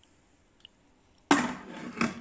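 Stainless steel lid of an electric pressure cooker being put on: after about a second of near silence, a sudden clatter that fades into a short rattling scrape.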